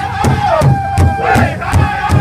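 Powwow drum group singing in the high-pitched northern style over a large hide-covered bass drum. The singers strike the drum together in a steady beat of almost three strokes a second, with loud group voices holding a high note.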